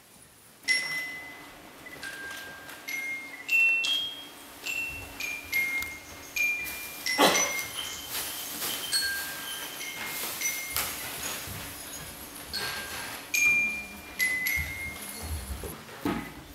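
High, bell-like chime notes struck one at a time at changing pitches, each ringing on, as a music cue. They start suddenly just under a second in, after a near-quiet moment.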